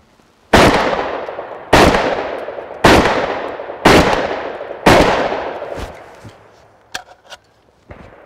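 Century Arms SAS-12 semi-automatic 12-gauge shotgun firing five shots in quick succession, about one a second, each trailing off over about a second. The gun cycles every round without a malfunction. A couple of light clicks follow near the end.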